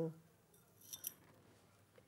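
A few faint, quick clicks about a second in as a sterling silver necklace chain is picked up and handled; otherwise quiet.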